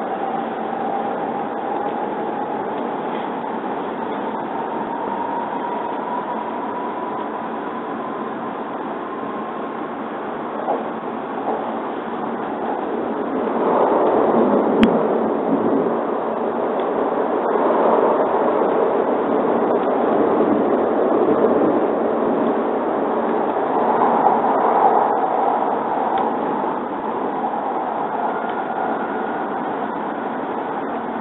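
Cabin sound of a W7 series Shinkansen pulling out of a station: the traction motors' whine rises steadily in pitch as the train gathers speed, over a constant rumble of running noise. About halfway through, the running noise turns louder and rougher and stays so, with a single sharp click in the middle.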